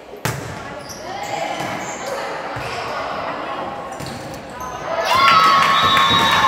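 A volleyball served with a sharp smack about a quarter second in, followed by spectators and players calling out in a large gym. About five seconds in, the voices grow louder into shouting and cheering as the rally ends.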